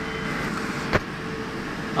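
Steady background noise, with a faint steady hum and one sharp click about halfway through.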